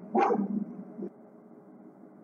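A dog barking: one loud bark at the start and a faint short one about a second in.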